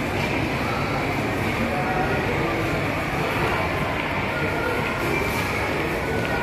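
Shopping trolley wheels rolling over a tiled floor, a steady rumble.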